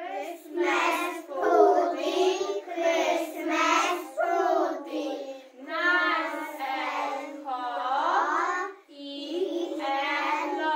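A group of young children singing a song in English together, in short phrases with brief breaks between them.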